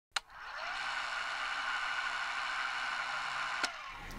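A sharp click, then a small motor whirring steadily for about three and a half seconds, ending with a second click near the end as it winds down.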